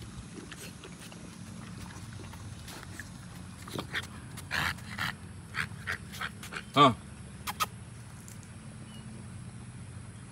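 American bully puppies scuffling together, with a quick run of short noises from about four seconds in and one loud, sharp yelp just before seven seconds.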